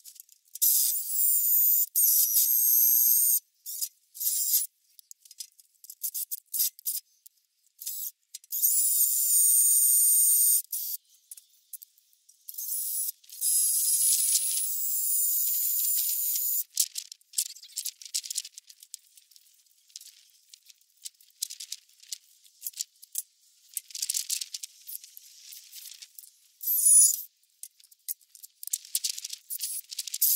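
Cordless drill/driver driving self-tapping screws through wood slats in three runs of two to four seconds each, its motor whining, with scattered clicks and rattles of handling between runs.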